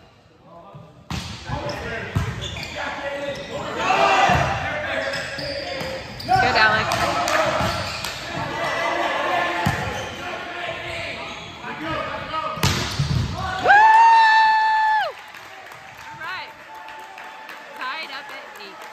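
Indoor volleyball rally: the ball being struck, sneakers on the hardwood court and shouts from players and spectators. Near the end a single loud held note sounds for just over a second, then stops, and the hall goes quieter.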